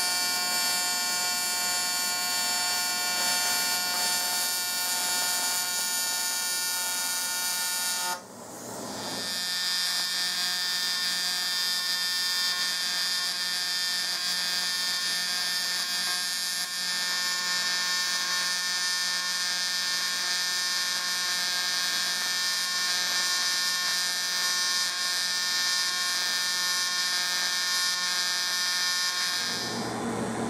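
AC TIG arc buzzing steadily from an HTP Invertig 201 inverter welder while welding aluminum. The arc cuts off about eight seconds in and strikes again a second later, then runs on until just before the end.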